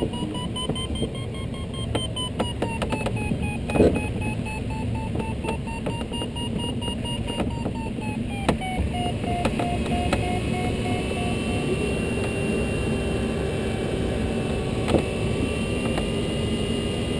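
A glider's audio variometer beeping in a rapid stream of short pitched beeps whose pitch slowly rises and falls, the usual signal of climbing in lift while the sailplane circles; past the middle the beeps drop lower, then give way to steady held tones. Under it runs the steady rush of airflow in the cockpit of a Duo Discus sailplane, with a few clicks early on.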